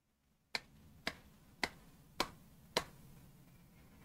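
Five slow hand claps, evenly spaced at about two a second.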